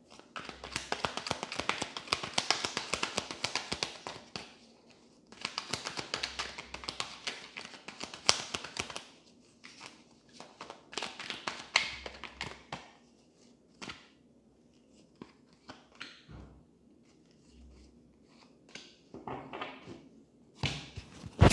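A tarot deck being shuffled by hand: three runs of rapid card-on-card flicking in the first dozen seconds, then a few separate taps as the cards are handled.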